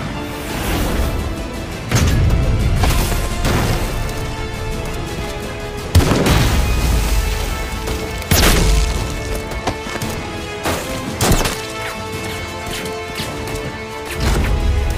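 Battle-scene film soundtrack: dramatic orchestral music with a handful of sudden loud bangs and impacts from gunfire and blows, the strongest about two, six and eight seconds in.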